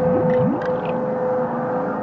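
Dark ambient drone score: one steady held tone over a dense, noisy rumble, with a few short rising glides in the first half-second.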